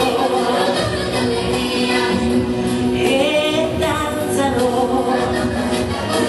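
A woman singing an Italian pop song into a microphone over instrumental accompaniment, holding long notes with vibrato.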